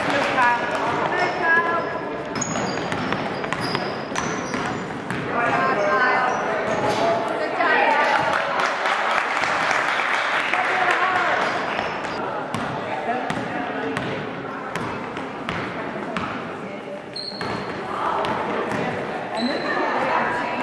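Sounds of a youth basketball game in play: a basketball bouncing on a hardwood gym floor, repeated short high sneaker squeaks, and the voices of players and spectators calling out.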